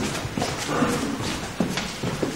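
Footsteps of several people on a hard floor, an uneven run of shoe heels knocking about every half second, with a brief pitched sound near the middle.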